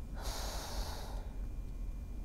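A person's breath close to the microphone: one airy breath lasting about a second, near the start.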